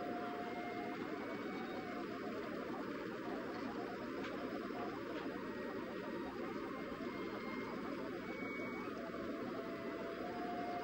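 Steady background hiss with a faint hum, even throughout and with no distinct events.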